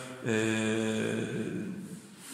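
A man's drawn-out hesitation vowel, a long "yyy" held on one steady pitch for about a second and a half, then fading out mid-sentence.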